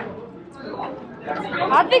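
Speech: people talking over background chatter in a large indoor hall, the talk growing clearer near the end.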